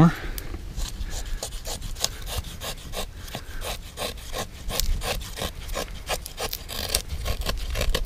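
A knife blade shaving thin curls down a cedar stick to make a feather stick: a steady run of short scraping strokes, about three a second.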